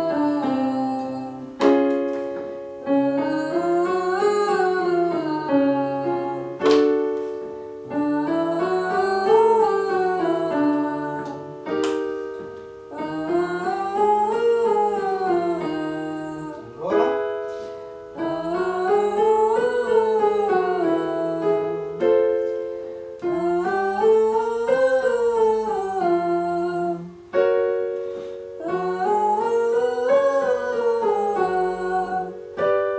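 A man and a woman singing a five-note vocal warm-up scale up and back down on an 'o' vowel through plastic ventilation masks held over their mouths, in octaves, with an electric keyboard giving the chord before each repeat. The phrase comes round about every five seconds, each time a semitone higher.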